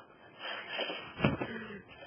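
A man's breathy, wheezy laughter in two gasping bursts.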